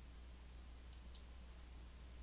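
Two faint computer mouse clicks about a quarter second apart, over near silence.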